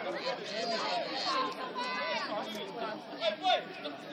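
Several voices talking and calling out at once, overlapping and indistinct, with no single voice clear.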